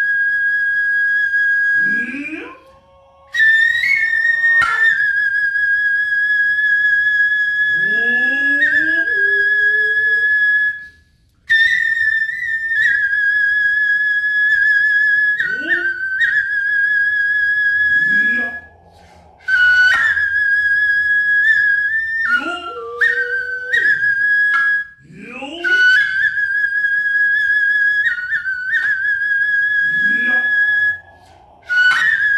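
Noh flute (nohkan) playing long, piercing high notes with a wavering pitch, broken by short pauses. Between phrases a drummer gives several rising shouted calls (kakegoe), with a few sharp hand-drum strikes.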